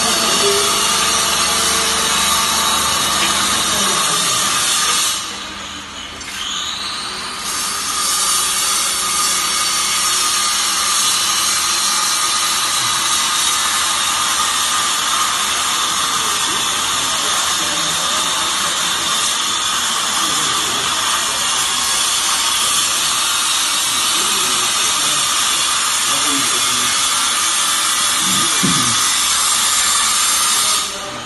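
Hydraulic pump motor of a vertical coir fiber baler running with a steady, loud whine. The whine drops away about five seconds in, then winds back up in pitch and runs on.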